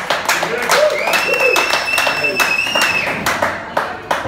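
A small audience clapping and cheering as a band's song ends, with a steady high-pitched tone held for about two seconds in the middle.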